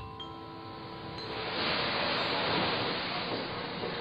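Sustained chime-like ringing tones die away over the first second or so, and a steady hiss of noise swells up in their place and holds.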